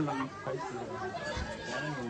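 Voices of people chatting in the background, softer than the talk just before and after, with no single clear speaker.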